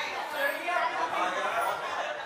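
Crowd chatter: many people talking over one another at once in a busy room, a continuous babble of voices with no single clear speaker.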